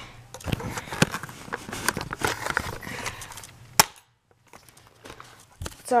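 Handling noise: irregular clicks, knocks and rustling of a plastic airsoft rifle being picked up and moved close to the camera, with one sharp click near the four-second mark.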